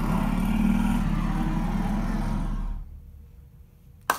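Loud low rumble of a film soundtrack playing through a cinema sound system, steady and dense, then cutting off abruptly about three seconds in.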